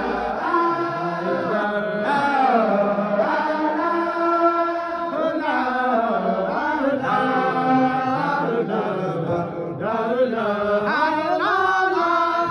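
Men's voices chanting a devotional zikr together, holding long notes that slide up and down.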